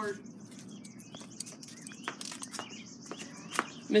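Birds chirping here and there, with a few sharp clicks in between.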